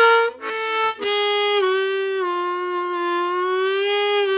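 Diatonic harmonica played with tongue-block draw bends: a short note and a brief second note, then a long held note that bends down in pitch and is sustained low, easing back up near the end.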